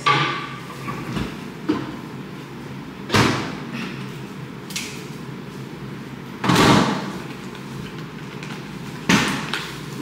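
A Whirlpool refrigerator door is opened and shut, giving a few separate knocks and thumps. The loudest come about three seconds in and about six and a half seconds in. Near the end a plastic berry clamshell is set down on the counter with a knock.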